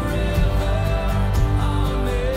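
Music with a steady beat over sustained notes.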